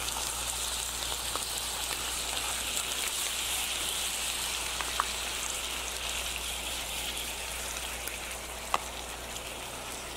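Andouille sausage chunks sizzling steadily in a hot skillet of olive oil, red pepper jelly and honey. There are a couple of faint light clicks, one about halfway through and one near the end.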